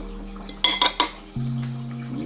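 A metal fork clinks three times in quick succession against a plate, a little past the middle, as it spears a sausage. Background music plays throughout.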